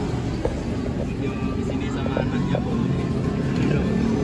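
A motor vehicle engine running steadily, with faint voices.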